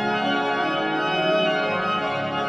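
Pipe organ music: full, sustained chords that shift slowly from one to the next.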